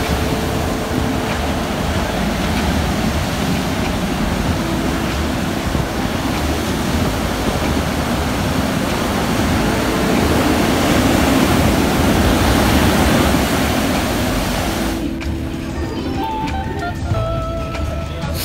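Steady rushing noise of ocean surf breaking, with background music underneath; about fifteen seconds in the surf noise cuts off, leaving the music.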